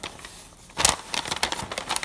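Paper instruction leaflet rustling and crinkling as it is unfolded and handled, with a sharp crackle about a second in followed by a run of small crinkles.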